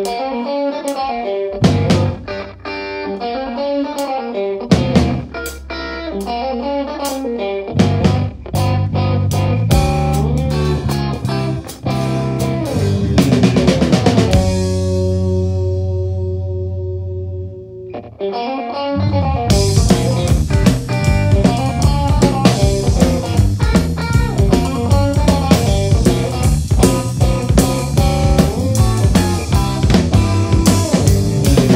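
Blues-rock trio of electric guitar, bass guitar and drum kit playing an instrumental boogie. An electric guitar riff runs over bass and drum hits, a chord is held ringing for a few seconds about halfway, and then the full band comes back in with steady cymbals.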